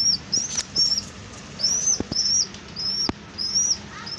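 Pigeon squab giving thin, high-pitched begging peeps, about two or three a second in short runs, each call rising and then levelling off, with a few faint knocks between them. These are the hunger calls of a nestling waiting to be fed.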